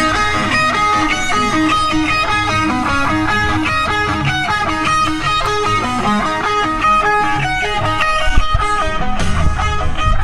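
Rock music led by fast-moving electric guitar lines over bass and drums, with the low end growing heavier near the end.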